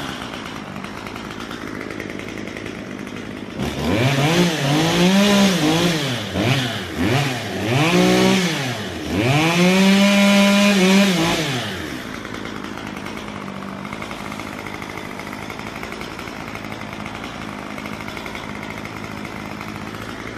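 Two-stroke gas chainsaw idling, then revved over and over from about four seconds in, its pitch rising and falling with each blip and held high for a couple of seconds around ten seconds in, before settling back to a steady idle.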